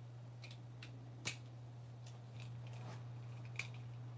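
Faint scattered small clicks of a screwdriver bit working the screws of a Benchmade Griptilian folding knife's handle, the sharpest about a second in, over a steady low hum.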